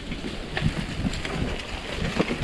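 Mountain bike riding along a dirt trail covered in dry leaves, heard from an action camera on the bike. There is a steady rumble of tyres over the ground, small clicks and rattles from the bike, and wind buffeting the microphone.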